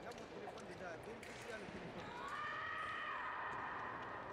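Fencers' footwork on the piste: short sharp stamps and squeaks of shoes as they advance and retreat. About halfway through, a long high-pitched vocal call rises and is held to the end.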